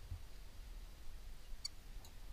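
Faint low rumble with a single small metallic click about one and a half seconds in: a carabiner knocking against the chain of a bolted climbing anchor.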